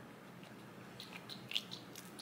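Pump dispenser of a liquid foundation bottle being pressed: a few faint, short squeaks and clicks, the loudest about one and a half seconds in.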